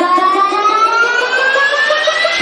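A synth riser in the show's dance-pop backing track: one pitched tone gliding steadily upward about an octave over two seconds, building up toward the beat.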